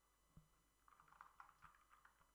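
Faint computer keyboard typing: a few soft key clicks, most of them in a quick cluster about a second in.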